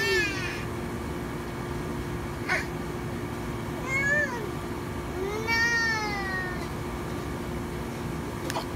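A toddler's crying winding down: the falling tail of a cry, then two short rising-and-falling whimpering wails, about 4 and 5 seconds in.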